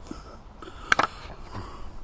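Quiet outdoor background noise with two sharp clicks close together about a second in.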